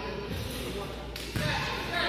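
A basketball bouncing on a hardwood gym floor, with dull low thuds a couple of times, over the murmur of voices in an echoing gym.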